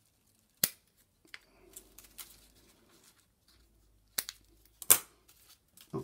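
Scissors snipping the wire stems off the backs of small paper flowers: a few sharp, separate snips, the loudest near the end, with faint rustling of the paper flowers between them.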